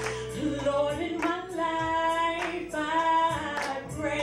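A woman singing into a handheld microphone, holding long notes and sliding between them, over a steady low accompaniment.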